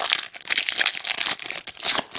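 Foil wrapper of an Upper Deck hockey card pack crinkling as it is opened by hand, a dense run of crackles throughout.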